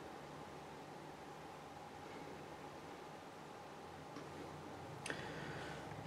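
Faint steady room hiss, with two soft clicks from the phone being handled about four and five seconds in.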